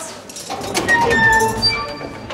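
Heavy prison cell door squealing on its hinges as it is swung shut, a drawn-out squeal with a few steady high pitches starting about half a second in.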